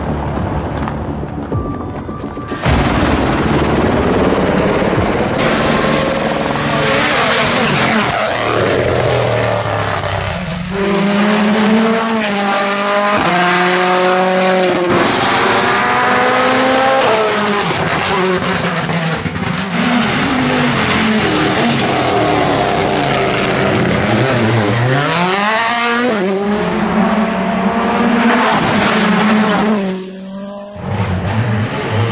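Rally1 rally cars' turbocharged four-cylinder engines at full throttle on a tarmac stage. They rev up through the gears with repeated quick upshifts, and the sound swells about three seconds in. Near the end the pitch drops sharply as a car brakes and downshifts, then climbs again as it accelerates away.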